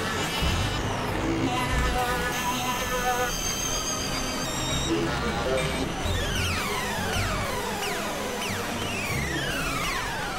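Experimental electronic synthesizer music: dense layered tones over a low drone, with a cluster of held, slightly wavering high tones a couple of seconds in. From about six seconds in, many repeated falling pitch sweeps overlap.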